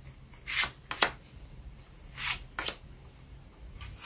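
Le Grand Circus & Sideshow tarot cards being slid out of a face-down spread and laid down one by one on the table: a few short, soft swishes and flicks of card on card.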